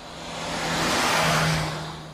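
A Mini driving past at speed: its engine and tyre noise swells to a peak about a second and a half in, then fades away.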